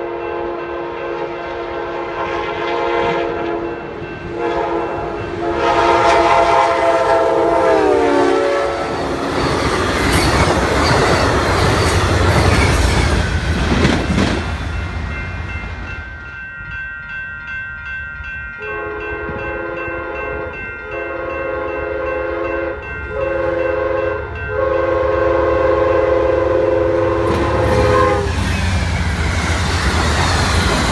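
Amtrak passenger train's multi-chime locomotive horn sounding a horn show: long chords that drop in pitch about eight seconds in as the locomotive passes, then the rumble and clickety-clack of the train rolling by. From about nineteen seconds in the horn sounds again in four blasts over the passing cars.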